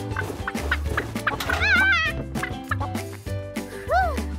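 Cartoon chicken clucks, a string of short clucks with a longer warbling squawk about halfway through, over light background music with a bass line.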